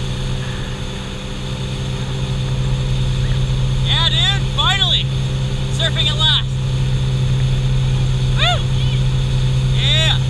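Motorboat engine running steadily under way, a constant low drone with water rushing past. From about four seconds in, voices call out in short, rising-and-falling shouts several times.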